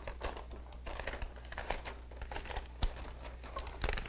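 Paper label liner crinkling and rustling as it is handled and fed between the applicator's rollers, with scattered light clicks and a sharper click about three seconds in and another near the end.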